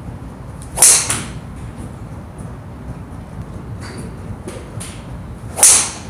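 Two golf drives from a tee: each time the driver swishes through and strikes the ball, about a second in and again near the end. Fainter ticks come in between.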